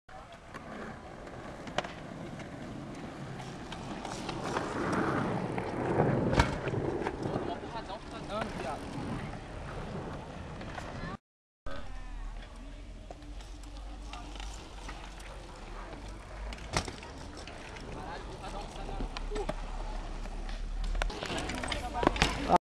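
Mountain-bike tyres rolling over hard pavement, with a few sharp knocks and people's voices in the background. The sound drops out briefly about halfway through.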